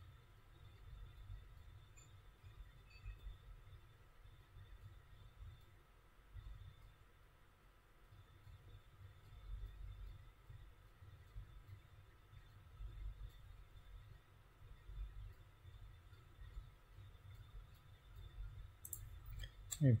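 Quiet room tone with a faint low rumble, then a quick run of computer mouse clicks near the end.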